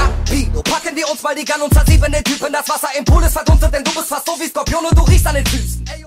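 Hip hop track with rapped vocals over heavy bass and drum hits.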